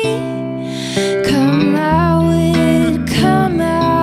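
A woman singing a slow song, holding long notes, to her own electric guitar accompaniment; a low note joins about halfway through.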